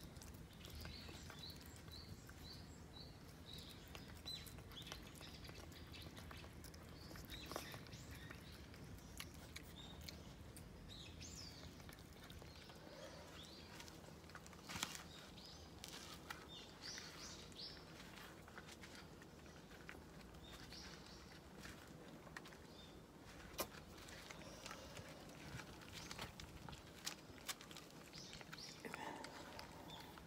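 Faint sounds of a tabby cat eating from a paper bowl, with a few scattered sharp clicks. Small birds chirp in the background, with short repeated chirps and now and then a quick rising call.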